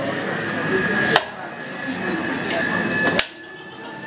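Hand-operated lithographic press having its pressure lever pulled down to put the pressure on the stone, giving two sharp metal clacks about two seconds apart.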